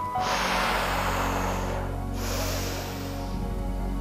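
A woman's long, hissing breath out through pursed lips, then after a short pause a sharp breath drawn in through the nose: the exhale and inhale stages of Bodyflex diaphragmatic breathing. Steady background music plays underneath.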